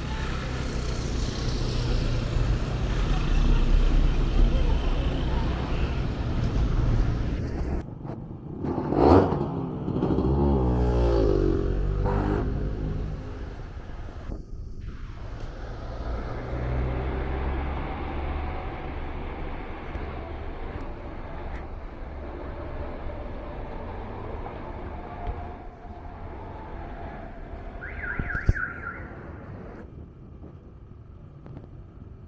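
Road traffic on a city street: a steady rumble of cars passing. About nine seconds in, one louder vehicle goes by, its engine note rising and then falling away.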